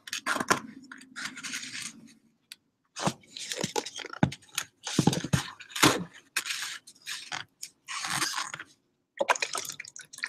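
A jar of freshly mixed liquid watercolor paint being shaken gently and handled in gloved hands: irregular scraping, rustling and knocking against the table, with liquid sloshing.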